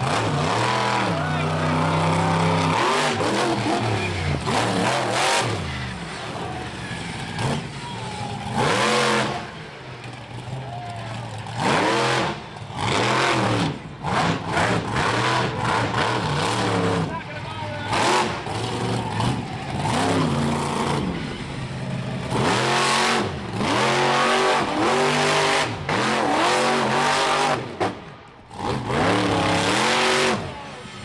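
Michigan Ice Monster monster truck's engine revving hard over and over, its pitch climbing and falling with each stab of the throttle, in a string of loud surges a second or two long.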